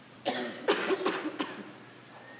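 A person coughing, a quick run of about four coughs with some voice in them.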